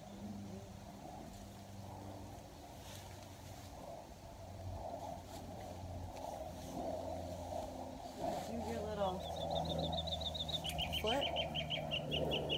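A bird's fast trill of high, evenly repeated chirps, about six a second, starting about nine seconds in and dropping to a lower pitch partway through, over a low steady hum.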